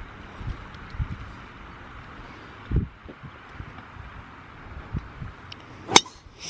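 Golf driver striking a teed ball: one sharp crack just before the end, over a faint steady outdoor hiss with a few soft low thumps.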